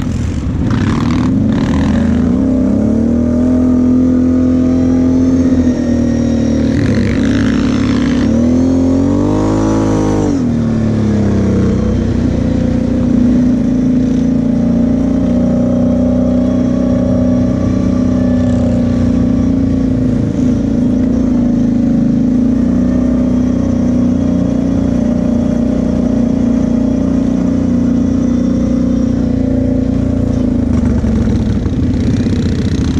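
Kawasaki KFX 700 V-Force quad's V-twin engine running steadily under the rider, its pitch rising in a short rev and falling back about ten seconds in.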